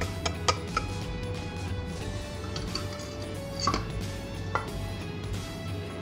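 A stirring utensil clinking and scraping against a stainless steel bowl while egg batter is mixed, a few sharp clinks in the first second and two more later, over faint background music.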